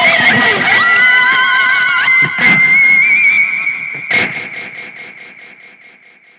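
Electric guitar played through multiple delay effects: a held high note with vibrato and a few picked notes, then the delay repeats trail off in fast even echoes that fade away.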